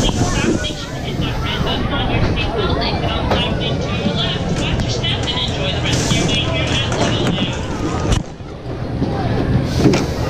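Amusement-park jet ride car running along its track with a steady low hum, under the chatter of voices around the ride; the sound drops away briefly about eight seconds in.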